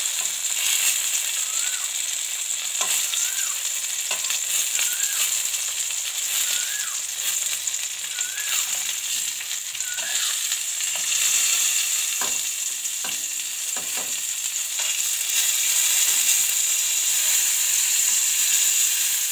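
Stuffed green tomatoes frying in a little oil in a kadhai over a very low flame: a steady sizzle that grows louder near the end, with a few light knocks against the pan in the middle.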